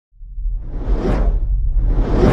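Whoosh sound effects of an animated logo intro over a deep low rumble: one whoosh swells to a peak about a second in, and a second one builds near the end.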